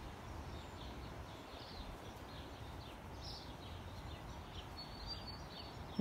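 Wind blowing on the microphone as a low, steady noise, with faint, scattered bird chirps in the background.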